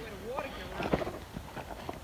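Faint footsteps on dry, clod-strewn dirt, a few soft crunches and knocks.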